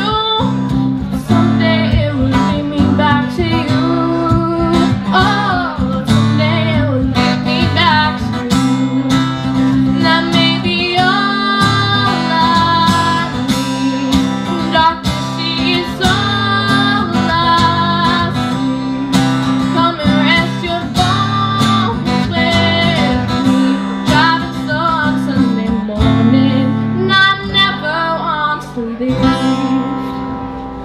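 Live acoustic guitar strummed in steady chords while a woman sings a song over it into a microphone.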